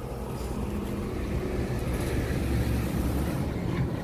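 A motor vehicle's engine running close by, a low rumble that grows louder over the first second or two and then holds steady.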